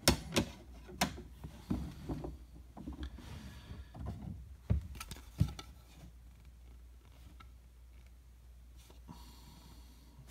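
Hard plastic PSA graded-card slabs clicking and knocking as they are handled and set down, a handful of light knocks in the first half or so.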